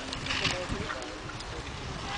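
Wind buffeting the microphone, a steady low rumble with hiss, with faint voices of people nearby.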